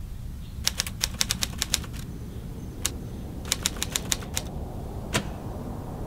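Typewriter key clacks as a sound effect: a quick run of about a dozen strikes, a single strike, a second run of about seven, then one last strike near the end. A steady low rumble runs underneath.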